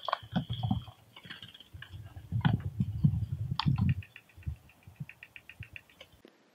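Soft handling rustles and low bumps as a small songbird is let go from cupped hands after banding, followed by a rapid even run of faint ticks for about two seconds.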